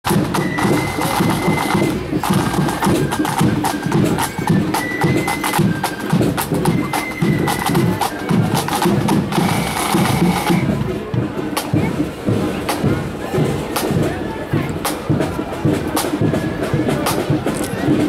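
Marching flute band playing a tune on flutes over a steady beat of side drums. About eleven seconds in, the flutes fall away and the drums carry on.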